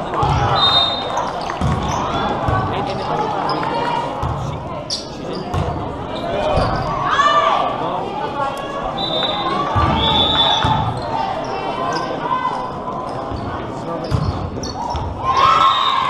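Indoor volleyball play echoing in a large hall: thuds of the ball and feet on the court, short high squeaks, and players and spectators calling out.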